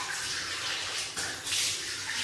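Water running from a washbasin tap while handfuls of it are splashed onto a face to rinse off face wash, with several louder splashes, the biggest about one and a half seconds in.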